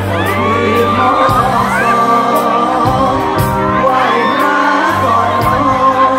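Live band playing a Thai luk thung song through a concert PA, with a male singer's voice over steady bass notes and cymbal strikes.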